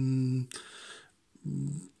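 A man's voice holding a drawn-out hesitation sound, then a soft intake of breath and a short low hum before he speaks again.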